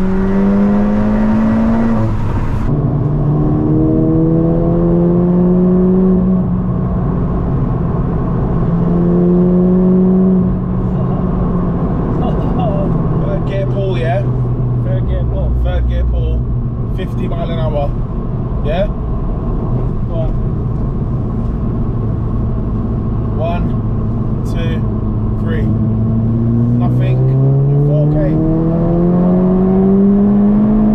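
Turbocharged 2.0-litre four-cylinder engine of a Mk7 Golf GTI tuned to around 500 bhp, heard from inside the cabin. The revs climb and drop a few times in the first ten seconds, then hold steady at lower revs, and climb strongly again under acceleration over the last few seconds.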